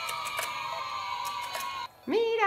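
Battery-powered toy fishing game running: a steady electronic tone with a few light mechanical clicks from its turning pond, cutting off suddenly near the end.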